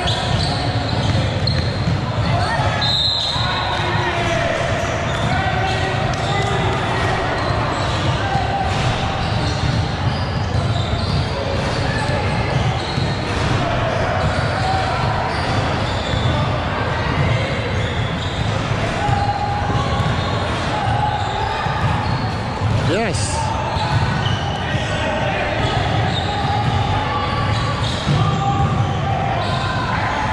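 Basketball bouncing on a hardwood gym court amid players' and spectators' voices, all echoing in a large hall. A short, high whistle blast sounds about three seconds in.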